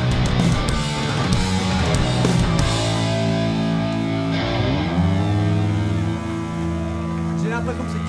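Live punk band of electric guitars, bass and drums playing loudly; the drums stop about a third of the way in and the guitars hold a ringing chord, sliding down in pitch near the middle, then sustaining as the song ends.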